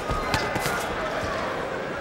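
Boxing arena crowd noise with two sharp thuds of gloved punches landing about a third of a second apart near the start.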